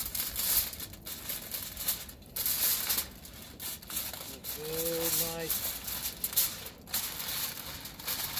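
Aluminium foil crinkling and rustling in irregular bursts as it is folded and pressed tightly around a brisket.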